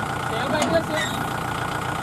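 Kubota L4508 tractor's diesel engine idling steadily, with people talking over it.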